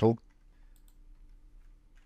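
A few faint computer mouse and keyboard clicks.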